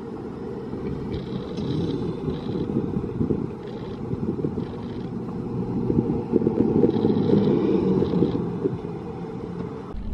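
Steel hyper coaster train running along its track, heard from off the ride as a low, noisy rumble that swells and is loudest from about six to eight seconds in, with faint higher sounds coming and going above it.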